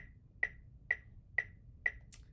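Metronome clicking at an even tempo, five clicks a little over two a second, sounding the quarter-note beat for the exercise.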